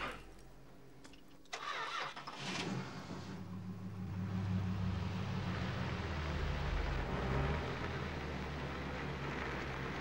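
Chevrolet Camaro engine starting: quiet at first, it catches with a rough burst about a second and a half in, then settles into a steady idle.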